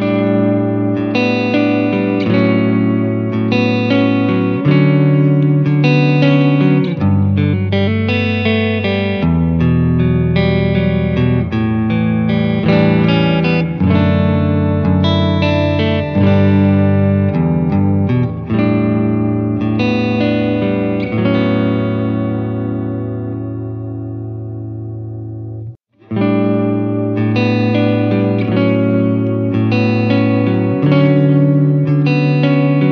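Electric guitar through an amp: a Suhr Classic T Antique (alder body, rosewood fingerboard, SSV humbucker in the neck) plays a chordal phrase whose last chord rings out and slowly fades. About four seconds before the end it cuts off suddenly, and a Suhr Classic T Pro (swamp ash body, maple fingerboard, SSV neck pickup) starts playing.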